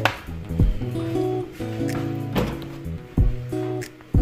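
Background music: a soft instrumental with held low notes.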